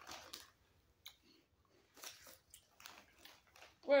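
Cheese-puff-style puffed corn snacks being chewed with the mouth, a few irregular crunches.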